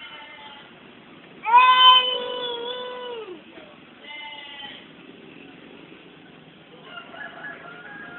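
A young child's voice: one loud, long held cry about a second and a half in, lasting nearly two seconds and dropping in pitch as it ends, then a shorter, fainter call about four seconds in.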